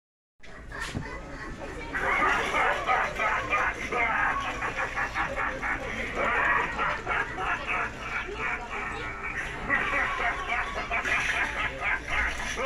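Spirit Halloween Stilts the Clown animatronic playing its recorded voice track, a distorted character voice with no clear words, which gets louder about two seconds in and carries on as the figure moves.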